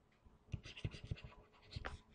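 Stylus writing on a pen tablet: a run of short, faint scratches and taps, starting about half a second in.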